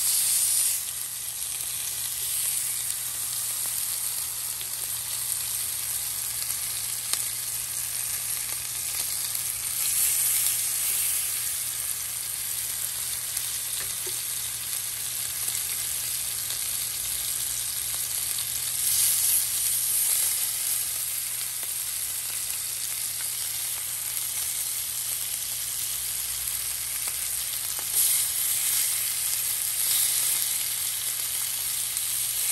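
Seasoned lamb chops searing in hot olive oil in a cast iron pan: a steady sizzle that swells louder four times.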